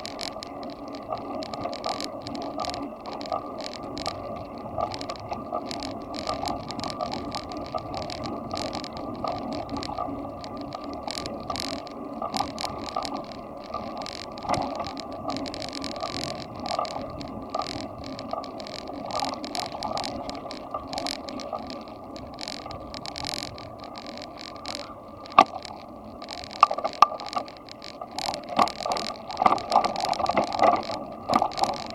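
Bicycle riding along a paved cycle path, heard from a camera on the moving bike: a steady rolling rumble of tyres and frame, with frequent small clicks and rattles over the surface. A few louder sharp knocks come in the last few seconds.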